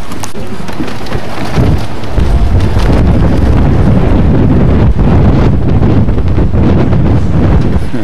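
Wind buffeting the camcorder's microphone: a loud, low rumble that thickens about a second and a half in, with scattered knocks from the camera being handled on the move.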